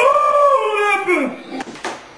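A man's drawn-out wordless howl that rises briefly and then slides down in pitch over about a second and a half. Two short knocks follow near the end.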